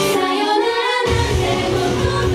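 Female idol vocal group singing live into microphones over a pop-rock backing track. The opening second has the voices with little beneath them, then the bass and drums of the full backing come in suddenly about a second in.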